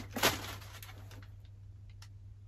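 Paper packing stuffing handled while a backpack is unpacked: two short rustles at the start, then only faint handling sounds over a steady low hum.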